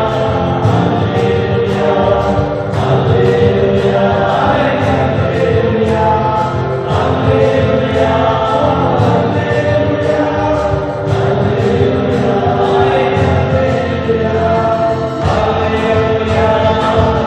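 A congregation singing a hymn of thanksgiving together, led by a man's voice through a microphone and loudspeakers, over a steady beat of about two a second.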